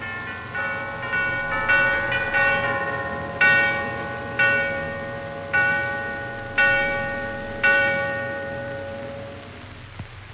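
Bells ringing: a quick run of overlapping strikes, then single strokes about once a second, each ringing on and fading.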